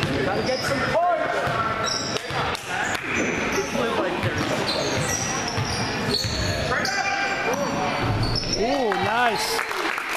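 A basketball being dribbled on a hardwood gym floor, with sneakers squeaking and indistinct voices echoing in the gym; a voice calls out near the end.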